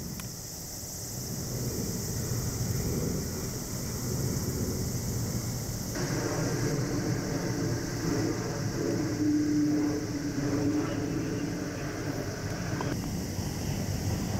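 Steady outdoor background noise: a low rumble under a constant high hiss. From about the middle, a distant engine hum with a steady tone joins in.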